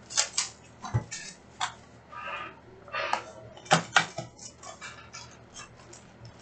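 Plastic shrink wrap being torn off a box of trading cards, then the foil packs inside handled and pulled out: irregular crinkling and rustling with sharp clicks and taps, loudest a little past the middle.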